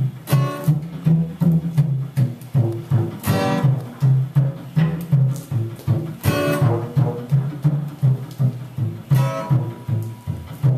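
Washtub bass (a metal washtub with a broomstick and a single string) plucked in a steady boogie rhythm of about two low notes a second, with an acoustic guitar strumming along.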